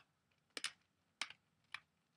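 Four faint, short clicks about half a second apart.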